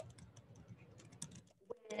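Faint computer keyboard typing: a run of quick, light key clicks, with a slightly louder click near the end.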